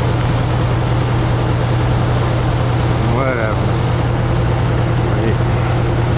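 Steady low drone of fire engines running at the scene, with a constant rushing noise over it. A short voice call cuts through about three seconds in.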